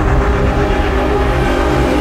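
Logo-sting sound design: a loud, steady low rumble under sustained droning tones, with a whoosh breaking in at the very end.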